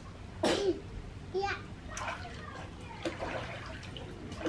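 A young child's short high-pitched vocal sounds, with light water splashing in an inflatable paddling pool.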